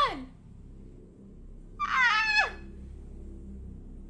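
A short, high-pitched whine or squeal that falls in pitch, about two seconds in, over a low steady hum.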